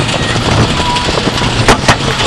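Steel roller coaster train running along its track, heard from on board as a steady noise of wheels and rushing air. Two sharp knocks come close together near the end.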